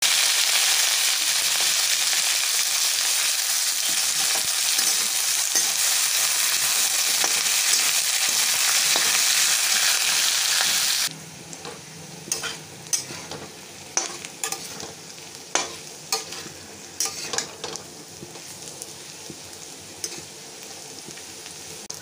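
Sliced onions and potato wedges sizzling loudly and steadily in hot oil in a steel kadhai. About eleven seconds in, the sizzle drops suddenly to a quieter frying sound, with repeated scrapes and clinks of a metal spatula stirring them against the pan.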